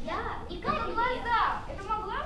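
Young girls' voices speaking lines of a play on stage, high-pitched.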